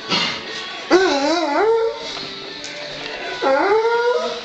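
German Wirehaired Pointer baying twice: a long wavering howl about a second in, and another that rises in pitch near the end, over music from a radio.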